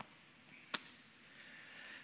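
Faint rustle of Bible pages being turned by hand, with one sharp click about three-quarters of a second in.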